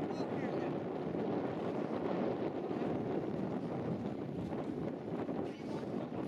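Wind buffeting the camera microphone, a steady low noise throughout.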